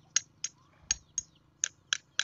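A screwdriver tapping a scrap metal faucet fitting six times, giving short dull knocks with no ring. It is a tap test to tell scrap bronze from aluminium by sound.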